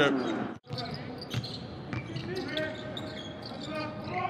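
Game sound from the court: a basketball bouncing on the hardwood floor in scattered knocks, with faint players' voices calling out.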